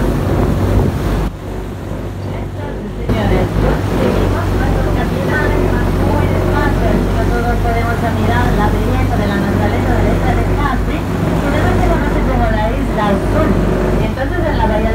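Tour boat's engine running steadily under way, with the rush of water from its wake and indistinct voices over it; the sound drops briefly about a second in.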